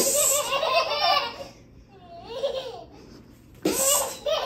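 A baby laughing hard in three high-pitched bursts, the first and last breaking out suddenly, as she plays peekaboo with a parent.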